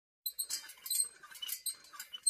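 Intro logo sound effect: a run of short, high chiming tones with glittering clicks.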